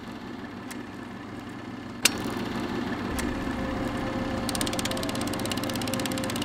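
Film projector running: a steady motor hum with one sharp click about two seconds in, then fast, even clattering from a little past the middle.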